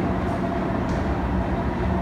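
Steady low rumble with a faint, even hum.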